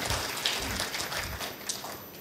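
Audience applause: many hands clapping in a dense patter that thins out and fades near the end.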